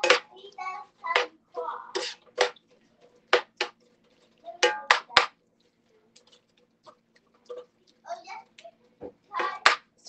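A metal utensil scraping and clinking against a cast iron skillet while stirring sliced peppers and onions: about a dozen irregular sharp knocks and short scrapes, some with a brief ring. A faint steady hum runs underneath.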